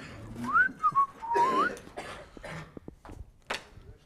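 A person whistling a short rising, warbling phrase of about a second. Rustling and a few knocks come from a flip chart stand being carried, with a sharp knock near the end.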